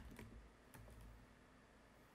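Faint computer keyboard typing: a few soft key clicks against near silence.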